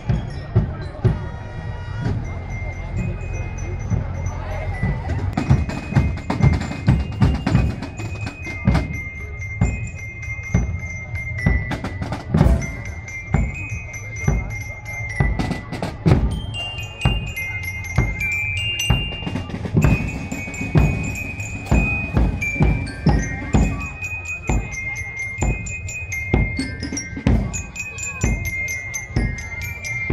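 Marching band of drums and glockenspiels (bell lyres) playing a tune, a bright bell melody over a steady drum beat.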